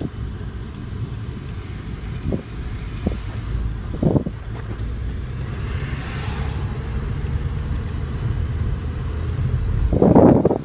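Steady low road and engine rumble heard from inside a moving car's cabin, with a few short thumps, the loudest about four seconds in, and a brief rush of passing traffic around six seconds in.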